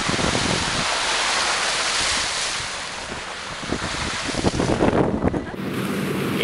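Wind rushing over the microphone of a ute driving along a wet, muddy dirt track, with steady road and tyre noise. The rush eases after about three seconds, and a run of knocks and clatter follows near the end.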